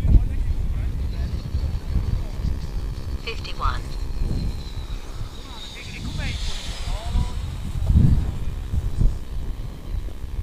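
Wind buffeting the microphone in gusts on an open slope. Over it runs a faint, high, slightly falling whistling whoosh that swells about six seconds in, as the RC glider's airframe passes close overhead.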